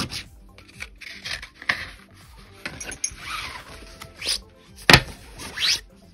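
Scratch-off lottery tickets of thin card being handled, with irregular rustling and rubbing as the next ticket is brought up. There is a sharp click about five seconds in.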